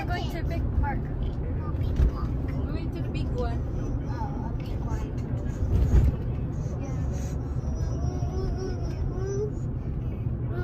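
Steady low road and engine rumble of a moving car heard from inside the cabin, with a thump about two seconds in and another about six seconds in. Indistinct voices chatter over it.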